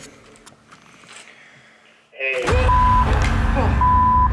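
Quiet for about two seconds, then a walkie-talkie suddenly bursts on loud: a rush of static with two short beeps.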